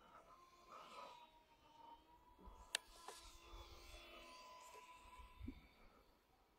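Near silence with a faint steady whine from the distant E-flite UMX Twin Otter RC plane's twin electric motors and propellers in flight. A single sharp click nearly three seconds in.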